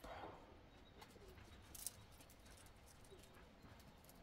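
Near silence, with a pigeon cooing faintly and one faint click a little under two seconds in.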